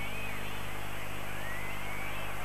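Steady hiss and low electrical hum of an old TV broadcast recording, over a faint stadium crowd with thin gliding whistle-like tones.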